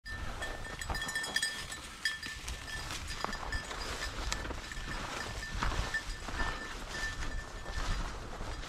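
Footsteps swishing and crunching through tall dry grass and weeds as a hunter walks the field, with scattered clicks and a faint high ringing tone that comes and goes.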